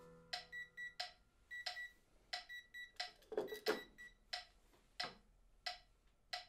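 A digital metronome clicking softly, first in an uneven run of clicks with short high beeps, then settling from about four seconds in into a steady tick of about one and a half clicks a second. The last piano notes die away at the very start.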